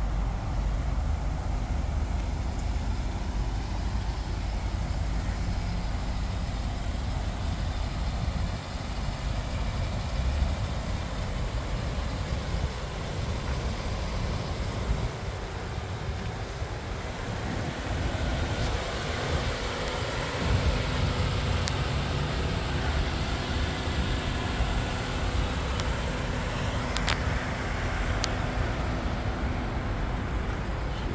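Steady outdoor traffic rumble, strongest in the low end, with a faint steady hum joining a little past halfway and a few sharp clicks near the end.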